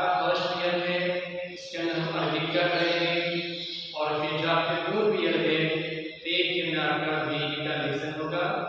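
A man's voice chanting Arabic melodically in long held phrases, with brief breaths between them.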